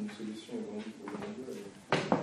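A faint, distant voice speaking off-microphone, a student answering the teacher's question in the classroom.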